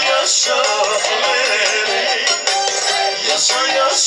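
A man singing live into a microphone through a PA system over loud amplified band music, his voice wavering and ornamented on held notes.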